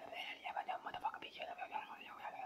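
A man whispering into someone's ear, the words indistinct.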